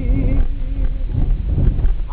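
Steady low rumble inside a moving car's cabin, with a few irregular knocks. A man's sung note dies away about half a second in.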